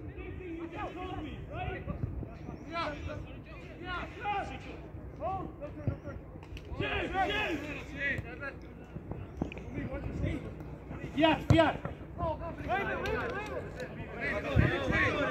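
Shouts and calls of players across a football pitch, with a few dull thuds of the ball being kicked.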